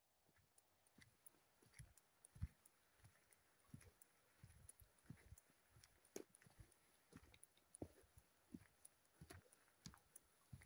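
Faint footsteps of boots on a hard floor at a steady walking pace, each step a short knock.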